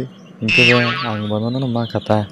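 A cartoon character's voice speaking. About half a second in, it opens with a high exclamation whose pitch falls.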